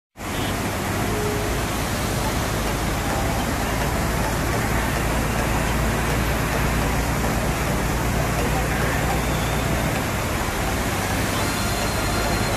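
Floodwater rushing over a broad stone weir and down a rocky waterfall cascade, a steady, unbroken rush of white water. The voices of a crowd are mixed in.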